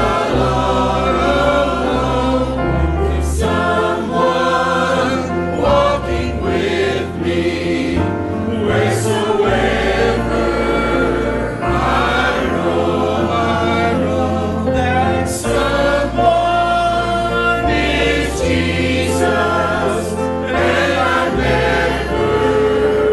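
Mixed church choir singing a gospel hymn in parts, over instrumental accompaniment with a steady bass line.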